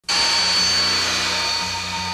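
Jet airliner engines running: a steady high whine over a broad rush of noise that cuts in suddenly at the start. Low musical notes sound underneath.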